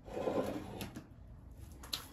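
A brief rustle in the first second, then a couple of faint clicks.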